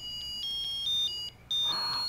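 Electronic beeping melody from a musical plush dreidel's sound chip: thin, high pure tones stepping from note to note about every quarter second, with a short break near the end.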